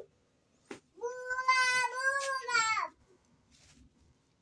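A single long, drawn-out cry, like a meow, about two seconds long, held steady and then falling in pitch at the end. A single click comes shortly before it.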